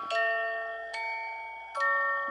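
The music box in a musical spinning cake stand plays a slow tune: three ringing notes about a second apart, each fading before the next.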